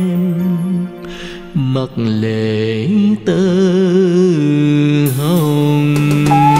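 Vietnamese bolero ballad: a male voice holds long, wavering notes with vibrato over a steady band accompaniment. The sound dips briefly twice, about a second in and again past the three-second mark.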